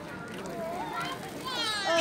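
Children's voices in the background: faint high-pitched chatter and calls, with one child's voice rising more clearly near the end.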